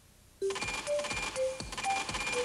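A brief silence, then a TV promo sound effect starts abruptly: a quick run of short electronic beeps at different pitches over fast, even ticking.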